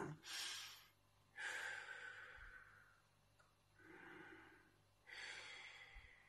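A man's slow, audible breathing: a short breath in through the nose, then a longer breath out through the mouth that fades away, about twice as long as the inhale. A second, fainter breath in and out follows near the end.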